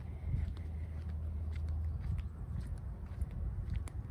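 Footsteps of a person walking, with scattered short clicks over a steady low rumble of wind and handling on a handheld phone microphone.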